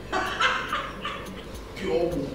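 A man laughing hard, a choppy burst of laughter in the first second, with another short laugh near the end.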